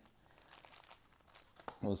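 Foil trading-card pack wrappers crinkling as a stack of packs is shuffled in the hands, a soft crackle lasting about a second.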